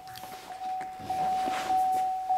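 Chevrolet Camaro's in-cabin warning chime sounding with the driver's door open: a steady high tone that repeats about every 0.6 s. Faint clicks and rustling come from someone getting into the seat.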